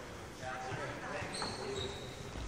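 Indistinct voices in a large, echoing sports hall, with soft footfalls on the wooden court floor and a brief high squeak in the second half.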